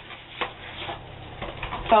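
A cardboard product box and its packaging being handled and opened: a sharp click about half a second in, then scattered small ticks and rustles.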